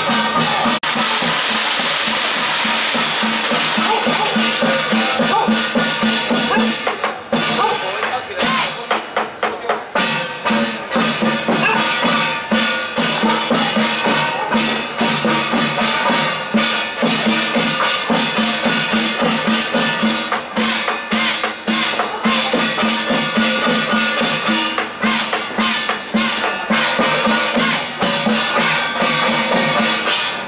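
Loud festive temple-procession music: a steady, continuous melody over fast, uneven drum and percussion strikes, the beating growing denser after the first several seconds.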